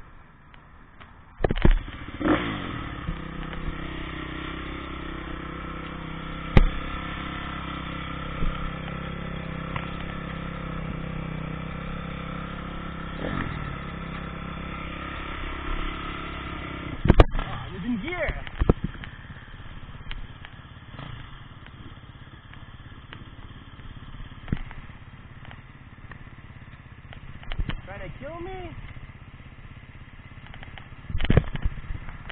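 Honda CRF250 four-stroke single-cylinder dirt bike engine catching on a kick start about a second and a half in, then idling steadily. A sharp knock comes about halfway through, after which the engine sound is quieter and less even.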